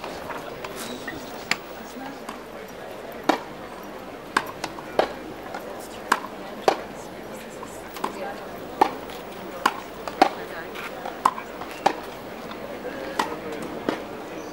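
Tennis ball struck back and forth with racquets in a practice rally on a grass court. About a dozen sharp pops come roughly one every half-second to second, starting about three seconds in, over a murmur of voices.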